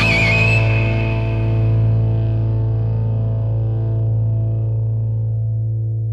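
Closing chord of a rock track with distorted electric guitar ringing out and slowly fading after the band stops playing. The high overtones die away first, leaving a low sustained hum.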